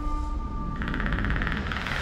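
Film-trailer sound design: a low, steady rumble, joined about a second in by a fast, even rattle of clicks.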